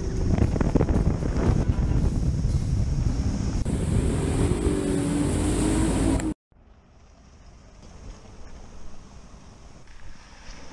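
Bass boat outboard motor running at speed across a lake, with water rushing past the hull and wind buffeting the microphone. It cuts off abruptly about six seconds in, leaving only faint wind noise.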